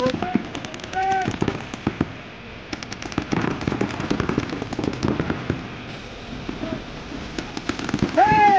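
Paintball markers firing in rapid strings of sharp pops, easing off briefly about two seconds in and again about six seconds in, then picking up near the end.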